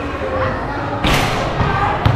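A basketball thumping on a concrete court during play, among crowd voices and chatter, with a short sharp burst of noise about halfway through.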